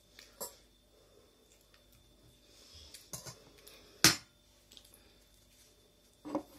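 Quiet chewing of a baked pie, with a few short mouth clicks and one much louder sharp click about four seconds in.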